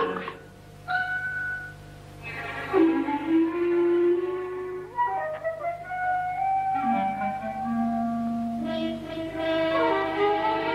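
Film score music: a flute and other woodwinds play a few slow, held notes, with short quiet gaps in the first couple of seconds.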